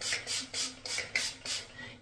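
Redken Extreme CAT protein treatment sprayed from its pump spray bottle onto wet hair: a quick run of short spritzes, about three or four a second, trailing off near the end.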